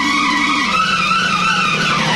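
Car tyre squeal used as a sound effect in a dance edit: a long, wavering screech that drifts slowly down in pitch and falls away near the end, with a low tone stepping down underneath.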